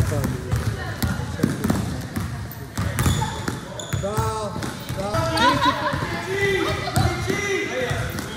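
A basketball bouncing and dribbling on a hardwood-style gym floor, a string of sharp thumps. Players' voices call out in the second half.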